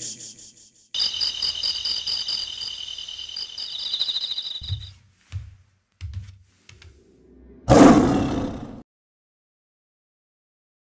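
Intro sound effects: a shimmering high tone for a few seconds, then four low thumps about 0.7 s apart, then a loud roar-like burst about a second long that cuts off suddenly.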